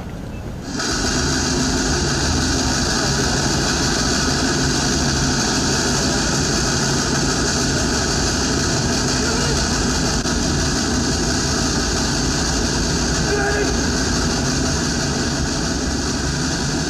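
Steady engine-like roar with a low hum, starting abruptly about a second in and holding unchanged.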